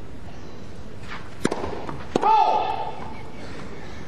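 A tennis ball struck hard by a racket twice, about 0.7 s apart: a serve and its return. The second hit is followed at once by a short, loud vocal cry over steady background noise.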